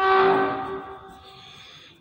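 A single loud pitched tone, horn- or ring-like, that sets in suddenly and fades away over about a second and a half.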